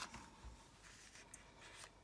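Near silence, with faint rustling of a paper envelope being handled.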